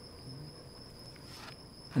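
A steady, high-pitched trill of insects, with faint scraping from a plastic spreader smoothing fairing putty on the fiberglass floor.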